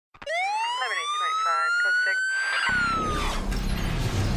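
A single siren wail rising steadily in pitch for about two and a half seconds, then falling, with short snatches of a voice underneath. A low rumble comes in as the wail starts to fall.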